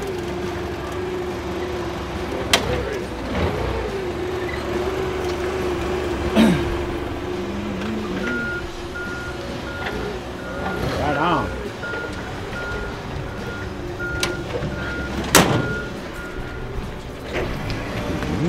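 Forklift running beside a pickup truck with a steady hum, then its reversing alarm beeping about one and a half times a second through the second half as it backs away. A few sharp metal clunks come through, the loudest about three-quarters of the way in.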